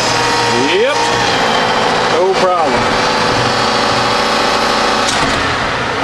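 John Deere 6110 tractor's four-cylinder diesel running steadily while the front loader's hydraulics work the arms, with brief whining glides about a second in and again at about two and a half seconds.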